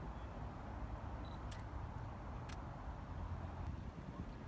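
Two sharp clicks of a DSLR camera's shutter, about a second apart, over a steady low rumble.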